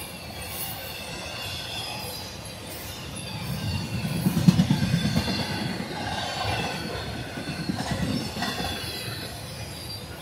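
Intermodal freight cars rolling past close by: a steady rumble of steel wheels on rail with a thin, wavering wheel squeal above it. The rumble and clatter swell about four seconds in and again near the end as trucks pass.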